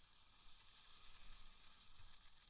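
Near silence: a faint, steady hiss from skiing fast over snow behind a dog team.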